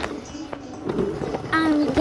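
Light clattering and rustling of plastic toy dolls being handled in a toy bus, with a few small clicks, then a child's high voice starting about a second and a half in.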